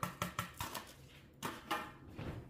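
Quiet taps and clicks of a small plate against a glass bowl as seasonings are knocked off it onto a stick of butter: a few quick taps, then two more about a second and a half in.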